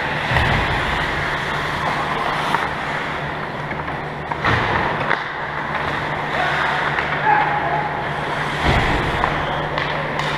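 Ice hockey game in an indoor rink: a continuous wash of skates on the ice and play noise, with a few short knocks and a steady low hum underneath.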